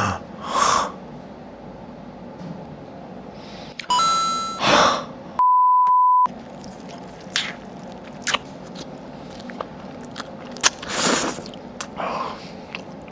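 Close-miked crunching, clicks and tearing of crispy nurungji-crusted chicken being pulled apart and chewed. An edited-in electronic beep lasts about a second near the middle, just after a short tone and a whoosh-like burst.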